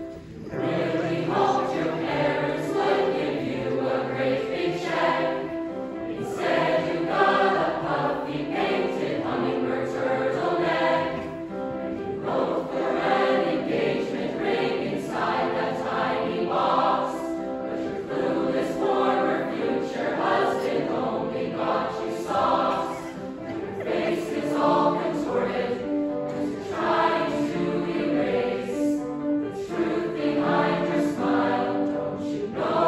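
A large mixed choir singing a song in many voices. The choir comes in just after the start.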